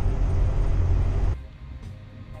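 Loud low rumble of engine and road noise inside a Fleetwood Fiesta class A motorhome's cab while it drives down a highway. It cuts off suddenly about one and a half seconds in, leaving a much quieter sound.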